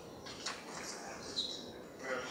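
Laptop keyboard typing: a few key clicks about half a second in, then a brief high squeak about a second and a half in, over quiet room noise.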